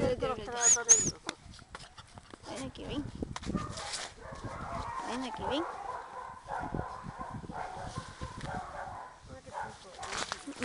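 Dogs barking and yelping now and then, among people's voices.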